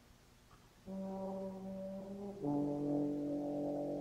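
Solo euphonium, unaccompanied in a cadenza, playing two long held notes. The first enters about a second in; the second, lower and louder, begins about two and a half seconds in and is still sounding at the end.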